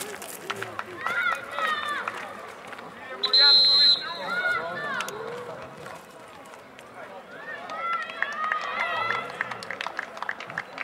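Referee's whistle: one short steady blast of under a second, about a third of the way in, over distant voices of players and spectators calling out.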